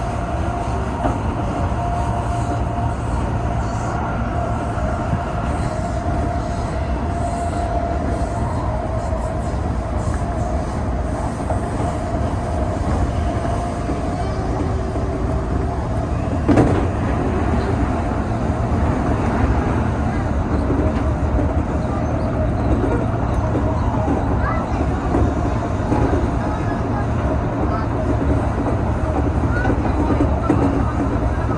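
Odakyu 8000 series electric train running at speed, heard from the front cab: a steady rumble of wheels on rail with some clickety-clack and a steady whine that fades around halfway. About 16 seconds in, an oncoming train passes close by on the other track with a brief loud rush.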